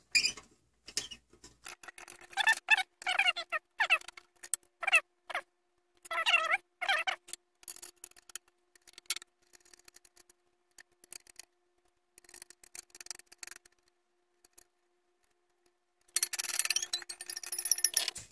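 Quick, irregular metal clicks and clinks of a scroll saw's blade clamps and thumbscrews being handled during a blade change to a spiral blade, sped up.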